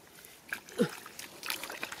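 Wet, sticky mud being dug with a wooden stick and scooped by hand: scraping strokes and short squelching, sucking sounds as the tool pulls free, about one every second.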